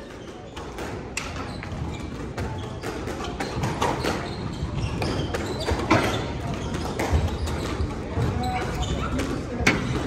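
A squash rally: the rubber ball cracking off rackets and the court walls, a series of irregular sharp knocks, the loudest about six seconds in and just before the end, over a murmur of voices in the hall.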